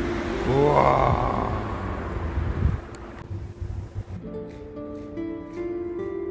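A rising, sweeping swoosh about half a second in over a noisy rumble, then gentle plucked-string background music, harp-like, comes in about four seconds in.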